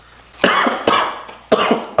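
A person coughing twice, once about half a second in and again near the end.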